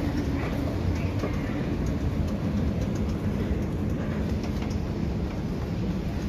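Escalator machinery running: a steady low rumble with a faint hum.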